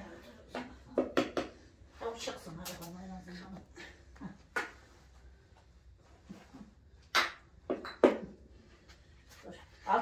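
Scattered sharp clicks and knocks of a knife against a floured metal baking tray as risen dough is cut and portioned by hand, with a few quiet murmured voices between them.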